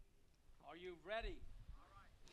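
Faint speech: a person's voice heard quietly in the background, in two short stretches.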